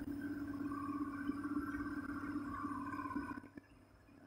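Marker pen squeaking faintly across a whiteboard as a row of numbers is written, stopping about three and a half seconds in.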